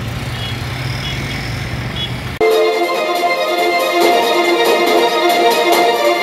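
A vehicle engine idling with a steady low hum while a high electronic beep sounds a few times. About two and a half seconds in this cuts off abruptly to loud orchestral music with strings, the loudest part.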